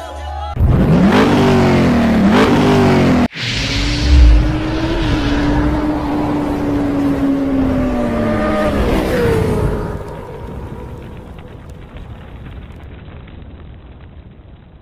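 Motorcycle engine sound effect. It revs up and down in quick blips for about three seconds, then cuts off abruptly. A deep thump follows, then a long held engine note that drops in pitch about nine seconds in and fades away.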